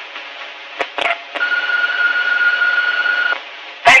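Answering-machine beep: one steady high tone lasting about two seconds, starting a little over a second in, after a couple of faint clicks. It sits over the steady hiss of a telephone line on a worn cassette copy.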